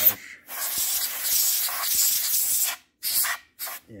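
Can of compressed air sprayed through its straw nozzle to blow dust off a circuit board: one long hissing blast of about two seconds, then two short bursts.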